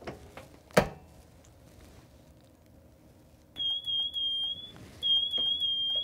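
A single clunk as the George Knight DK20S heat press is clamped shut, then the press's timer alarm sounding a high steady beep in two long tones of about a second each, signalling that the timed pressing cycle is done.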